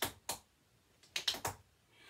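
Tap shoes striking a wooden parquet floor: a couple of single taps, then a quick run of four taps about a second in, the toe, toe, heel, heel drops of a cramp roll, giving a little roll sound.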